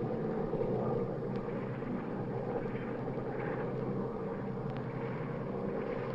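Steady drone of a propeller aircraft engine, a sound effect on an old film soundtrack, holding an even level throughout.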